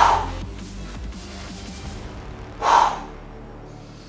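Background music with a steady bass line, over which a weightlifter gives two short, sharp exhalations about two and a half seconds apart, breathing out hard on each rep of a cable rope triceps pushdown.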